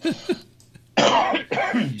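A man laughs briefly, then gives a harsh cough about a second in.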